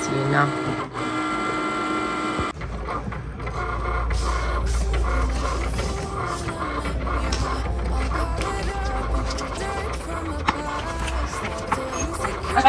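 A Cricut cutting machine runs with a steady mechanical whine for the first couple of seconds. About two and a half seconds in, the sound cuts to background music with a deep, steady bass line and a melodic line over it.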